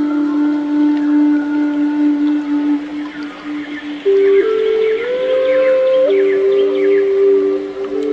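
Background music of slow, long held notes. One low note carries the first half, and higher notes come in about halfway, one sliding upward.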